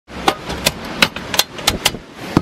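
Campingaz Camp'Bistro portable gas stove being lit: its igniter clicks sharply about six times in under two seconds, over a steady hiss.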